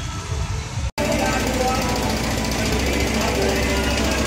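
Loud street procession for a Durga idol immersion: a crowd's many voices over fast, continuous dhol-tasha drumming. The sound starts abruptly about a second in, after a short stretch of quieter crowd noise.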